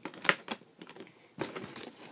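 Short clicks and knocks of a metal-edged makeup case and the items inside it being handled: a couple of light clicks early, then a quick cluster of taps and rattles near the end.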